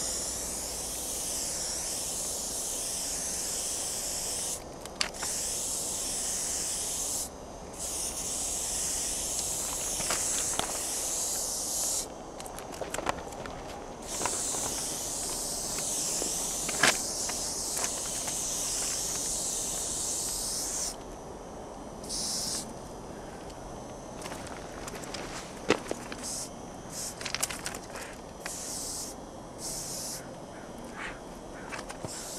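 Aerosol spray paint can hissing as a freight car is painted: long sprays of several seconds each with short gaps, then shorter bursts near the end. A few sharp clicks fall between the sprays.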